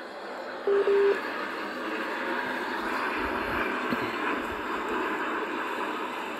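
Steady background hubbub of a busy place heard through a video-call connection. A short, low electronic beep comes just under a second in.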